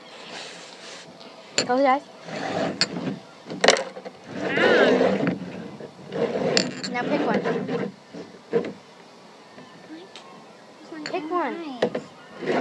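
Small glass baby-food jars being slid and shuffled around on a plastic tabletop, with scraping and several sharp knocks and clinks as they are moved and set down. Girls' voices and brief laughter come in between.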